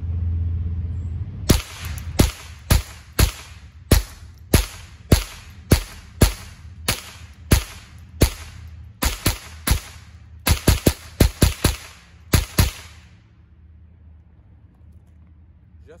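Rossi RS22 semi-automatic rimfire rifle firing a 25-round magazine, about two dozen sharp shots with a short echo after each. They come roughly every half second at first, then quicker for the last few seconds before stopping. The rifle cycles through the whole magazine without a malfunction.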